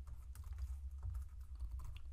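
Typing on a computer keyboard: a run of quick, irregular key clicks over a steady low hum.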